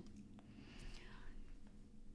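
Near silence between a woman's spoken phrases: low room tone with a faint, soft breath about a second in.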